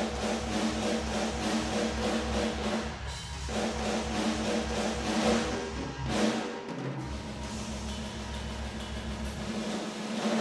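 Sampled acoustic drum kit from the Hertz Drums virtual instrument, heard through its room microphones alone, playing a dense metal groove with constant kick drum and washing cymbals. The low end drops out briefly a little past the middle.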